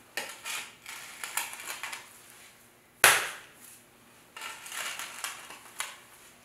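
A long wooden-handled tool scraping and cutting into a spiral of foot-wedged clay on the floor, in rough, uneven strokes. One sharp, loud knock comes about three seconds in, then the scraping starts again.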